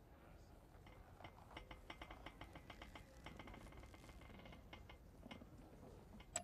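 Faint, quick, irregular mechanical clicking that runs for about four seconds, starting about a second in.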